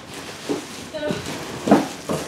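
A large cardboard box being handled and tipped upright, with soft scrapes and knocks and a louder bump near the end.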